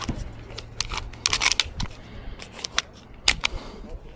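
A pistol being handled during the make-ready before a run: a string of sharp, irregular metallic clicks and rattles, the loudest a few about a second and a half in and another near three and a half seconds.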